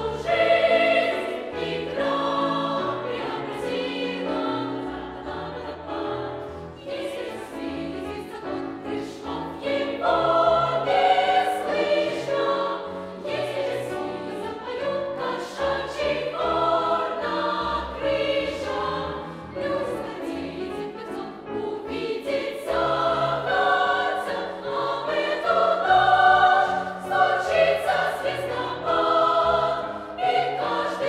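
Youth choir of mostly girls' voices singing with piano accompaniment, the sung phrases swelling louder in two passages and easing back between them.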